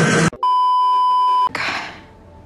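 A steady, single-pitched electronic bleep about a second long, the kind used to censor a word, starting abruptly after loud clip audio cuts off. A short rush of noise follows it.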